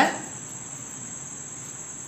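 Cricket chirring steadily at a high pitch over faint background hiss.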